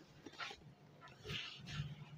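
Faint rustle and swish of a silk saree being lifted and swung out onto a counter, a few soft, short swishes with the clearest about a second in.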